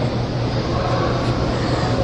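Steady background hiss with a low, constant hum underneath, without change through the pause.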